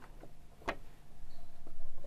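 Overlocker (serger) being started into the fabric: a single sharp click less than a second in, then a low, steady mechanical running sound that builds in the second half as the fabric feeds under the presser foot.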